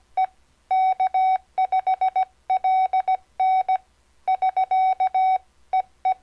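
Morse code (CW) sent as a single steady beep tone, keyed on and off in short dits and longer dahs. The elements come in several groups separated by short pauses, like letters and words of a sign-off message.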